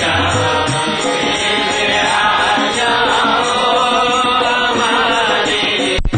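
Devotional chanting (kirtan): a sung mantra with musical accompaniment, running steadily throughout.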